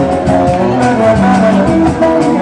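Live band music played loud through a club sound system: a wavering melody line over a steady bass and regular drum hits.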